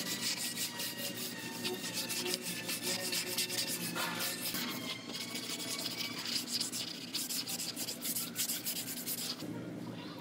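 Long hand sanding block rasping over body filler on a car's rear quarter panel in rapid back-and-forth strokes, with a brief break midway and a pause shortly before the end.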